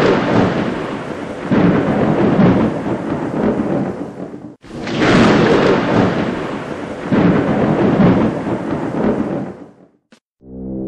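Thunder sound effect: a long roll of thunder that breaks off suddenly about halfway through, followed at once by a second roll that fades away near the end.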